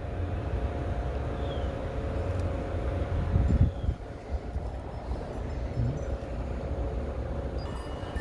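Steady low rumble of outdoor background noise with a faint steady hum over it, swelling briefly louder about three and a half seconds in.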